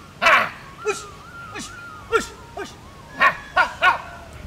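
A dog barking repeatedly: about eight short, sharp barks, coming closer together near the end, over faint flute music.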